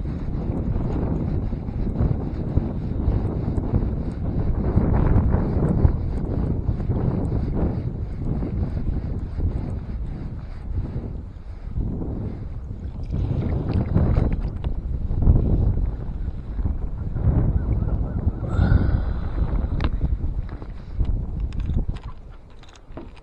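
Wind buffeting the microphone in gusts, a loud low rumble that swells and eases every few seconds. Under it, faint light ticking from a multiplier reel being wound in on a hooked fish.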